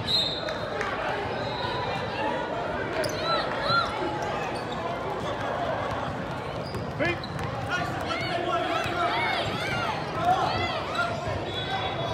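Sounds of a basketball game on a hardwood gym floor: sneakers squeaking in short chirps and a ball bouncing, over a steady murmur of voices in the gym.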